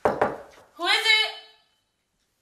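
Fist knocking on a door several times in quick succession, followed by a short call in a voice.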